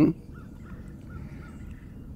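Quiet outdoor background with faint, short calls from distant birds.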